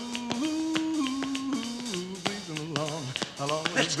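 A man's singing voice holds a long note on "a" that steps down in pitch over a few seconds, with sharp tap-shoe clicks throughout.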